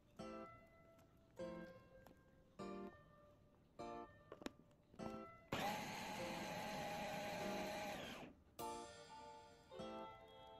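Background music of plucked guitar notes, one about every second and a bit. A loud, steady whirring noise runs for about three seconds from a little past the middle, louder than the music.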